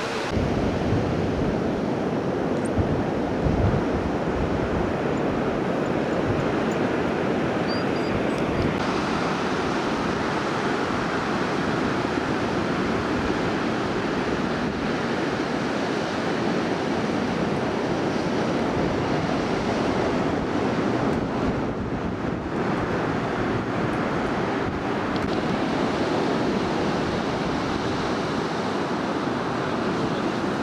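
Ocean surf breaking and washing ashore, a steady rushing. Wind buffets the microphone at times, most in the first few seconds.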